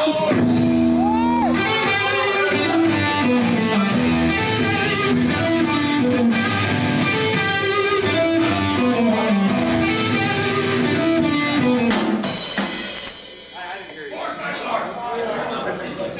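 Live metal band playing: electric guitars and a drum kit on a riff that steps down in pitch and repeats. About twelve seconds in, the playing stops after a crash, leaving quieter stage noise.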